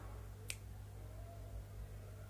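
A single crisp finger snap about half a second in, over a steady low hum.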